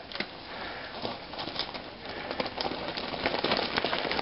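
Mountain bike tyres crunching over a loose, stony trail, a rattle of many small clicks that grows louder as the bike rides up close.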